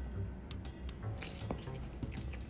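An otter chewing a chunk of raw cucumber, a run of short, wet, crisp crunches, over background music.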